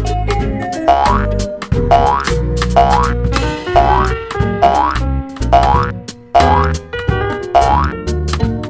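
Cartoon 'boing' sound effect repeated about eight times, roughly once a second, each a quick rising twang, over upbeat background music with a steady bass beat.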